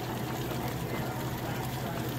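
Motor-driven crusher-destemmer running steadily, its auger turning and churning wet grape clusters and stems, with a steady motor hum under the wet, crunching noise.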